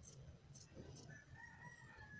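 Faint snips of tailor's scissors cutting through blouse fabric, three in the first second, then a distant rooster crowing, one call held for about a second.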